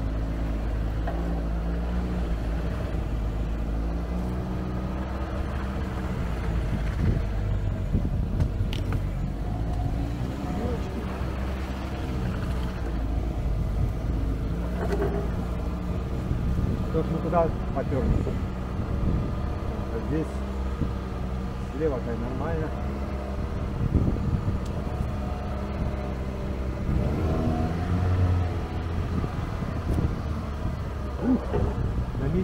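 ATV engine running steadily in low range as the quad pulls along a muddy bog track, its note rising and falling a little with the throttle.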